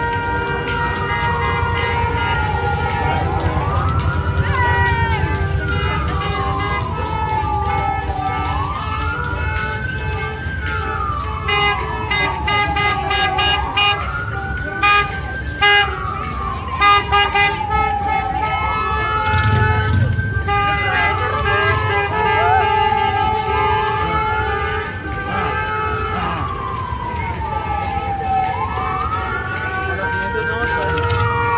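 A siren wailing slowly, its pitch rising quickly and falling away again about every five seconds, over crowd noise. A cluster of short sharp sounds comes around the middle.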